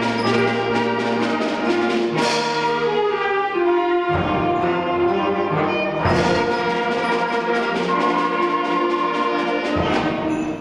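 Elementary school concert band playing, brass to the fore over woodwinds and percussion. Fresh loud full-band entries come about two and six seconds in.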